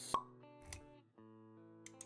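Intro music with steady held notes, marked by a sharp pop just after the start and a softer low thud a little later; the music dips briefly about a second in, then carries on.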